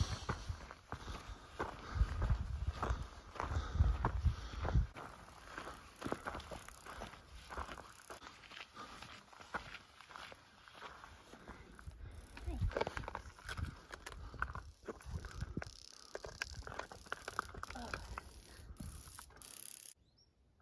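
Footsteps on a rocky, gravelly dirt trail, a scatter of irregular crunches and clicks. A low rumble on the microphone from about two to five seconds in.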